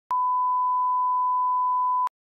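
A steady 1 kHz reference test tone, the line-up tone that goes with SMPTE colour bars, held at one unchanging pitch. It starts and stops abruptly, with a click at each edge.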